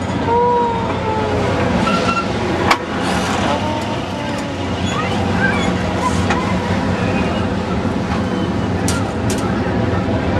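Steady mechanical hum and rumble of a fairground ride's machinery, over a background of crowd babble. There is one sharp click a little under three seconds in and a few lighter ones near the end.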